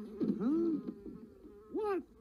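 A high-pitched cartoon voice making two short up-and-down pitch glides, one early and one near the end.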